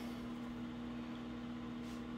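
Quiet room tone: a steady low hum under a faint hiss.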